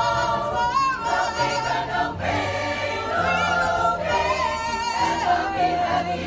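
A choir singing in harmony, several voices holding and sliding between notes, with low held notes underneath.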